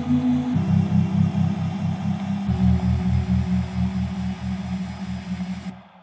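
Electronic music built from sampled moka pot sounds: a pulsing low bass pattern at about four pulses a second that shifts pitch twice, then stops abruptly shortly before the end, leaving a brief fading tail.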